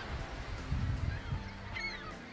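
A short honking bird call near the end, over a faint low rumble of outdoor air.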